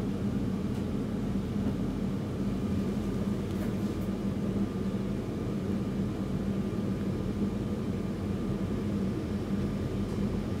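A steady low hum with a faint hiss over it, unchanging throughout, with no distinct sounds standing out.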